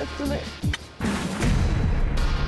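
A short laugh, then a sudden loud boom about a second in that runs into a low rumble under music.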